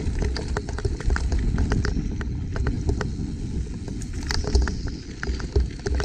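Mountain bike rolling down a dirt singletrack: a steady low rumble of tyres on dirt and wind, with frequent sharp clicks and rattles from the bike as it goes over bumps.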